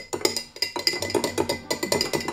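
Metal spoon clinking and rattling against the inside of a glass flask as a liquid is stirred, a quick irregular run of light clicks, over background music.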